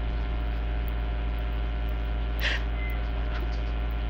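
Steady electrical mains hum from the microphone and sound-system chain: a low buzz with a ladder of evenly spaced overtones, unchanging throughout. A brief faint sound rises over it about two and a half seconds in.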